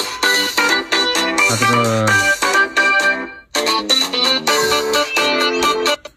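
Smartphone ringtone from an incoming call: a keyboard melody that breaks off briefly about three and a half seconds in, starts over, and stops abruptly at the end. It comes from a repaired Black Shark 3S that rings though its screen stays dark, showing that the motherboard works and the screen is broken.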